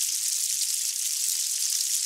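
Steady high-pitched hiss with no pitch and no rhythm.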